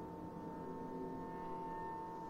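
Contemporary chamber ensemble holding soft sustained tones: one steady high note over several lower held pitches, with no attacks or rhythm, growing slightly louder toward the end.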